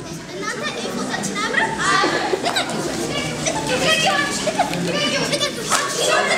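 Many children's voices chattering and calling out at once, with the reverberation of a large hall.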